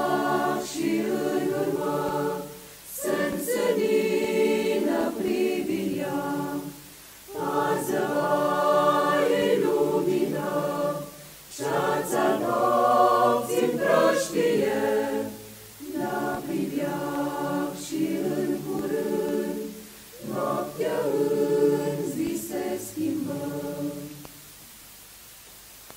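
Mixed choir singing a hymn in Romanian, unaccompanied, in phrases of about four seconds with short breaks for breath between them.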